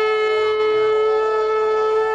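A conch shell (shankha) blown in one long, steady note rich in overtones: the traditional ritual call that opens a Hindu devotional recitation.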